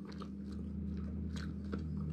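Close-miked chewing of crispy spiced French fries, with a few sharp crunches, the clearest near the end, over a steady low hum.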